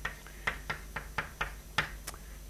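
Chalk tapping and clicking against a blackboard while equations are written: a quick run of sharp taps, several a second.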